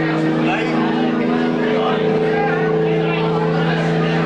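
Live band music: a loud, steady held chord droning underneath, with wavering higher notes moving over it.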